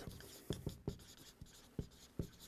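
Faint writing sounds: several soft, short taps with light scratching between them.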